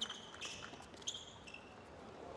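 Faint squeaks of tennis shoes on a hard court, several short high chirps, with a few soft taps that sound like a ball being bounced.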